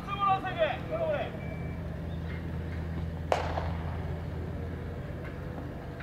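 Players calling out across a baseball field in the first second, then a single sharp crack about three seconds in, over a steady low hum.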